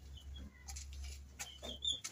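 Faint, brief high-pitched animal chirps, several of them in the second half, over a low steady hum.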